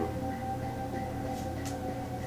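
Soft background music of sustained, held tones, with a couple of faint rustles of comic books being handled about one and a half seconds in.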